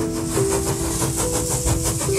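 Train running on rails with a hiss and a repeating clatter, under background music of long held notes.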